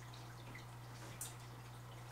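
Quiet room tone with a steady low hum and one faint tick about a second in.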